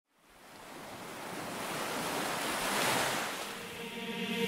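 Ocean surf with wind, fading in from silence and swelling over about three seconds.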